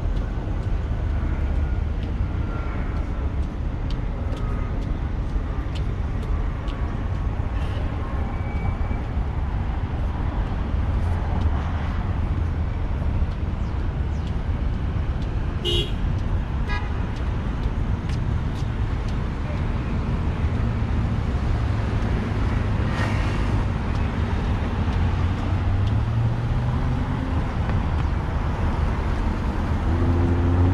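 Steady rumble of congested road traffic running close by, with a short car-horn toot about halfway through. Near the end, a vehicle's engine rises steadily in pitch as it accelerates.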